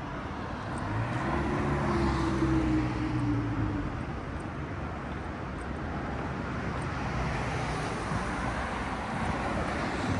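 A road vehicle passes close by, its engine note loudest a couple of seconds in and falling slightly in pitch as it goes, over a steady wash of city traffic noise.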